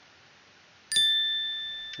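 A single bright electronic ding, the sound effect for a click on an animated 'Like' button. It strikes about a second in, after near silence, and rings on with a slowly fading steady tone.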